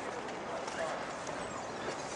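Footsteps on a paved path, about one every half second or so, over outdoor ambience with indistinct voices.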